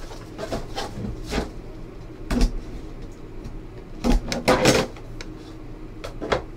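Handling noise as a trading-card box is opened and its contents lifted out: a series of knocks and scrapes of packaging, the loudest cluster about four and a half seconds in.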